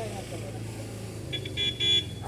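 A horn sounding in a few short beeps near the end.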